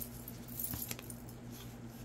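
Faint scattered light clicks and small metallic jingles, mostly in the first second, over a steady low hum.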